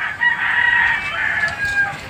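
A rooster crowing: one long call lasting nearly two seconds.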